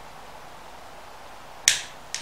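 A single sharp plastic snap near the end as the two halves of an LG washing machine door lock switch housing click shut.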